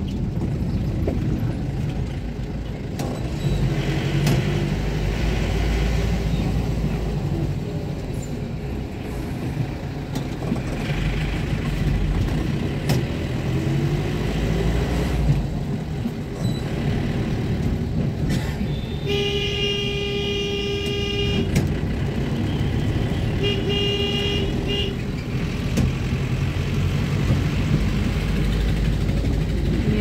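Steady engine and road rumble heard from inside a moving car. A vehicle horn sounds twice: a long blast about two-thirds of the way in and a shorter one a couple of seconds later.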